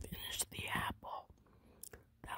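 Whispered speech close to the microphone during the first second, with a short click near the end.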